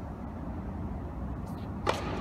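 Low steady hum of a large indoor tennis arena, then near the end a single sharp crack of a racket striking a tennis ball on a serve.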